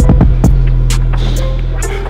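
Background music with a deep, droning bass line under a beat of sharp drum hits and high ticks; a new bass note comes in about half a second in.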